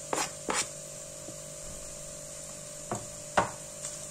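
A wooden spatula scraping chopped onion off a plastic cutting board into a frying pan and starting to stir, giving a few short knocks and scrapes: two near the start and two near the end. A steady low hum runs underneath.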